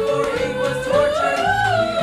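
Ensemble of voices singing a show tune, accompanied by piano and upright bass. About a second in, a held sung note rises in pitch, with a walking bass line underneath.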